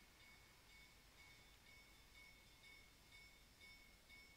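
Near silence: room tone with a faint, thin high-pitched whine.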